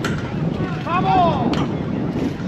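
Softball bat striking the ball with a sharp crack at the very start, then a shouted call rising and falling in pitch about a second in, and another sharp knock about a second and a half in, over wind on the microphone.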